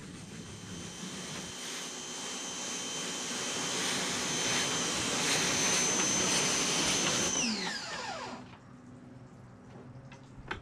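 A motor running with a steady high whine over a rushing noise, growing louder, then winding down with a steeply falling pitch and stopping about eight seconds in.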